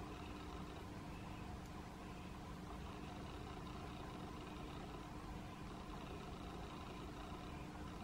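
Quiet, steady room hum with a faint constant tone, unchanging throughout; no distinct events.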